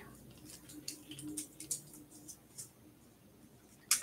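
Faint, light clicking of the beads on a stretch bracelet as it is handled and slipped onto a wrist. The ticks thin out after about two and a half seconds.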